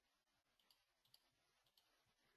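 Near silence, with a few very faint computer mouse clicks in the middle as chart timeframes are switched.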